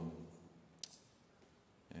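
A single short, sharp click about a second in, over quiet room tone, in a pause between phrases of a man's speech.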